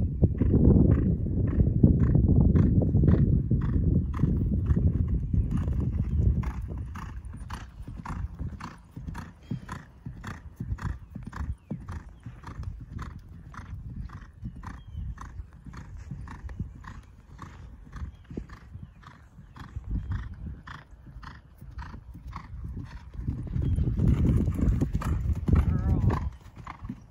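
Cantering horse's hoofbeats on grass, a steady, even rhythm of thuds, over a low rumble that is heaviest in the first six seconds and again near the end, when the horse comes close.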